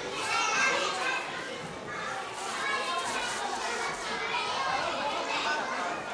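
Many young children's voices chattering and calling out at once, overlapping, in a large hall.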